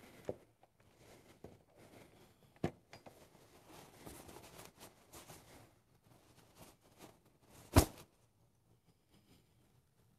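Flags and flagstaffs being handled as the colors are posted in their stands: faint fabric rustling and small knocks, with one sharp knock about eight seconds in, the loudest sound.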